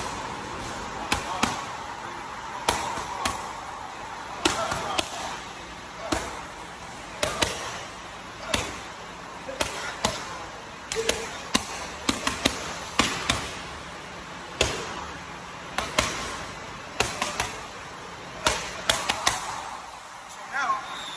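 Boxing gloves striking focus mitts: sharp pops, single or in quick doubles, coming about once a second with short pauses between combinations.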